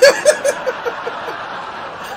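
A man laughing: a sudden loud burst that breaks into a quick run of short 'ha' pulses trailing off over about a second, with a steady wash of further laughter underneath.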